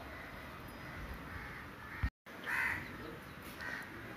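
Faint background hiss with a short bird call about two and a half seconds in. Just after two seconds there is a sharp click and a moment of total silence.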